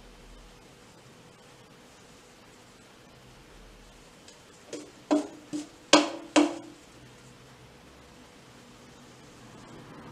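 Quiet background, then five sharp knocks in quick succession about five seconds in, roughly half a second apart, the fourth the loudest.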